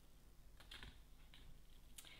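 A few faint, irregular light taps of a stencil brush dabbing paint through a stencil onto a plastic pot.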